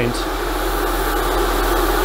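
Airbrush spraying a thinned weathering mix with a lot of air and very little paint: a steady hiss of air, with a steady low hum underneath.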